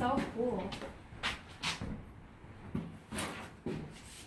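Footsteps on the cabin's wooden plank floor: a few short hollow knocks and thuds, coming in two pairs.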